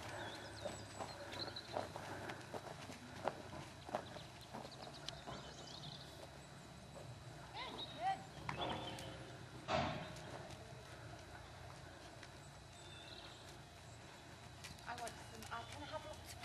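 Horse's hoofbeats: scattered, irregular knocks and thuds, the loudest nearly ten seconds in, with faint voices in the background.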